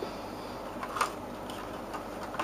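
Cardboard lamp box being handled and opened, with a few light clicks and a sharper tick about a second in, over steady room noise.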